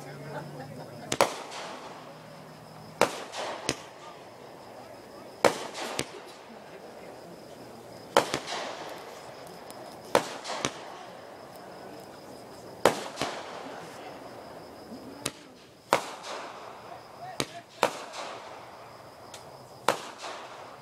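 Aerial fireworks going off: sharp bangs every two to three seconds, often in close pairs, each trailing off in a short echo.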